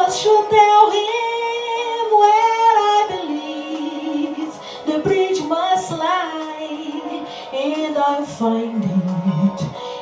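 A woman singing a slow ballad solo into a microphone, holding long notes and breaking into quick wavering runs about two and a half and six seconds in.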